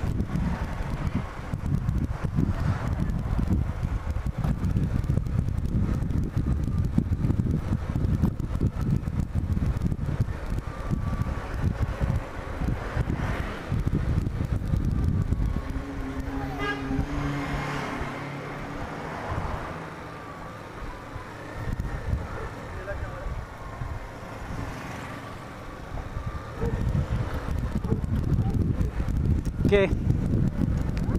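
Riding a 2008 Bajaj Platino 100 motorcycle, its small single-cylinder four-stroke engine running under a steady rush of wind on the microphone. The sound drops for about ten seconds past the middle, then rises again.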